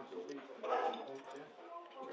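Faint background chatter of other diners talking in a crowded eating room.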